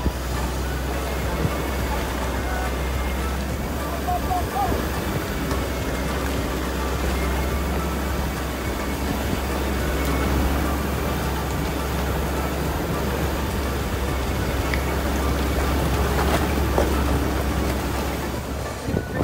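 Toyota Fortuner turbo-diesel 4x4 SUV driving over a rough gravel track: steady tyre-on-stone and engine noise heard through an open window, with a brief knock near the end.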